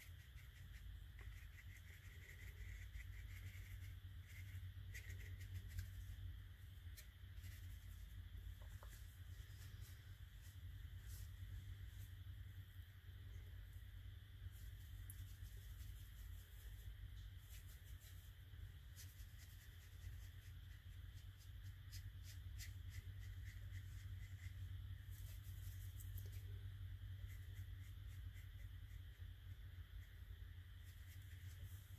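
Faint scratching and soft ticks of a round watercolour brush working on paper and dabbing in a palette, scattered irregularly over a steady low hum.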